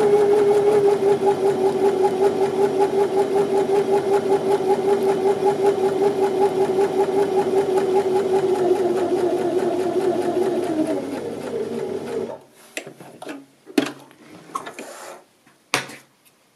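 Janome 725s electric sewing machine running steadily as it sews a single row of stay stitching along a fabric edge: a humming whir that pulses with each stitch, slowing down and stopping about twelve seconds in. A few light clicks and knocks follow.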